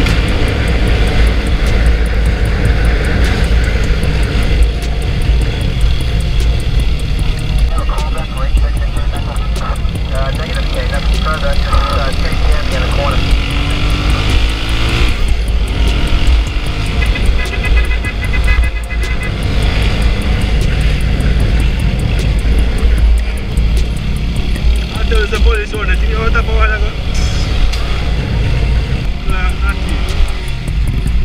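Zamco 250 motorcycle running at road speed, with heavy wind rumble on the mic. Muffled voices or background music come through now and then.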